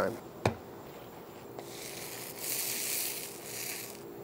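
A single sharp click about half a second in, then a soft hiss of food sizzling on a hot grill that swells for about a second in the middle and dies away.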